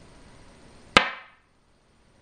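A single sharp clack of a go stone set down on a wooden go board, about halfway through, ringing briefly before it dies away.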